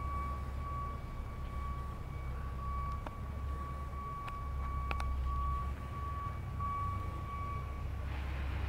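Outdoor ambience: a steady low rumble with a thin, steady high-pitched whine that stops shortly before the end, and a few faint clicks.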